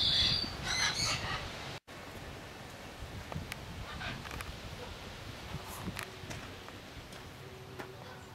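Bird calls in a short burst near the start, then quiet outdoor background with a few faint clicks.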